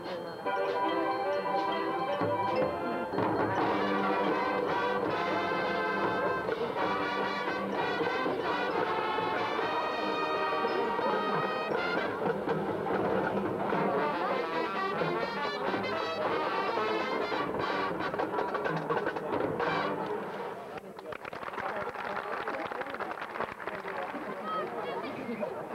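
High school marching band playing, led by its brass section, loud and full for most of the time, then dropping in level about twenty seconds in.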